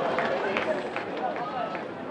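Street crowd noise: many indistinct voices calling and chattering, with scattered footsteps of people running on the pavement, growing slightly quieter.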